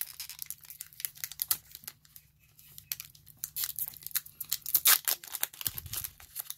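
Foil booster-pack wrapper being torn open by hand along its crimped top seal, the foil crinkling as it goes: a run of sharp crackles that thins out about two seconds in and is loudest near the end.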